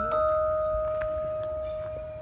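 Bell-like metal chime notes ringing out. A few are struck just as it begins, then sustain and slowly fade, with one faint extra strike about a second in.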